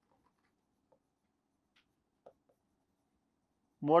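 Faint strokes and light squeaks of a felt-tip marker writing on a board, with one brief, slightly louder squeak a little past the middle.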